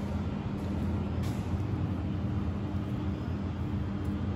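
Engine-driven end-suction fire pump set running at a steady speed, a constant low machine hum that holds one pitch throughout.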